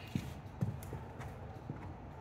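A horse's hooves walking on sandy arena footing: low, soft thuds about twice a second.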